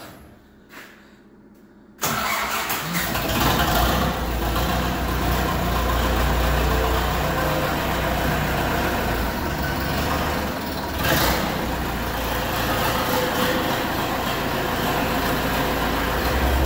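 Zetor 7711 tractor's four-cylinder diesel engine starting from cold in about −15 °C frost. It fires suddenly about two seconds in and then runs steadily at idle with a deep rumble.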